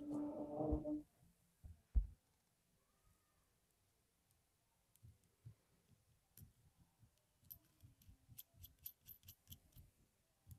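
Steel tweezers clicking and ticking against a brass pin-tumbler lock cylinder and its plug while it is being taken apart. The small sharp clicks come thick and fast in the second half, and there is a single knock about two seconds in.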